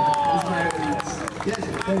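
A voice holding one long call that falls away about a second in, over crowd chatter in the street.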